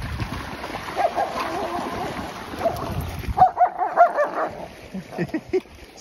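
Dogs splashing and running through shallow water as they play. About halfway through, a dog gives a quick run of short, high-pitched cries.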